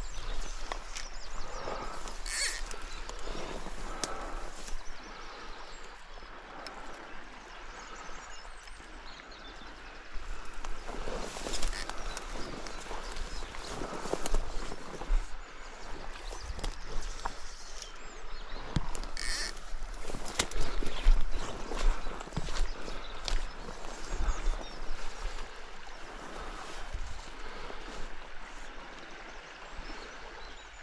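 Outdoor movement noise from a fly angler on a grassy riverbank: rustling and scattered soft knocks over a steady low rumble. It grows louder and busier from about ten seconds in.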